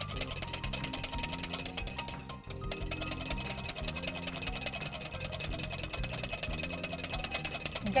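Wire whisk beating chilled cream in a glass bowl: rapid, even strokes of the wire against the glass, stopping briefly about two and a half seconds in, with background music underneath.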